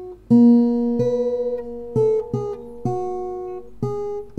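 Background music: an acoustic guitar strumming chords, about six strokes, each left to ring and fade before the next.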